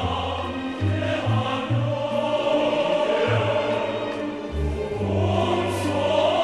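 Choir singing a Korean military song in Korean, with instrumental accompaniment and a low bass line moving from note to note.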